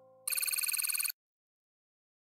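Electronic telephone-style ring used as a sound effect: a rapid, high trill lasting just under a second that cuts off suddenly. It follows a faint, fading set of steady tones.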